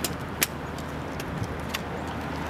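A few sharp metallic clicks from a portable wheelchair/scooter lifting platform's frame and latches as it is unfolded and set up, the loudest about half a second in, over a steady low outdoor hum.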